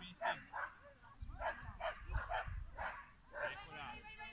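A dog barking over and over, roughly two short barks a second, with voices in the background.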